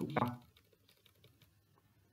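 Faint computer keyboard keystrokes, a quick run of light taps, as the Delete or Backspace key erases manually typed text in a Word document.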